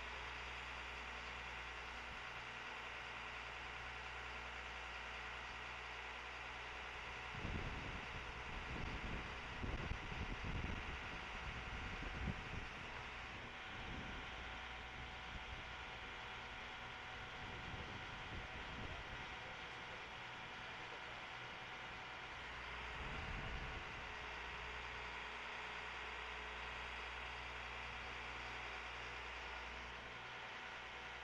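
Bucket truck's engine idling, a faint steady hum, with low buffeting rumbles for several seconds near the middle and once more later.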